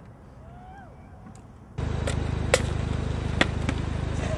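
Quiet for nearly two seconds, then an abrupt cut to raw outdoor camera sound: a steady low hum with a fine, even pulse, broken by a few sharp clicks.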